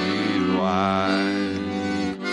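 Piano accordion playing sustained chords. A voice holds a wavering note over it for about a second, starting about half a second in.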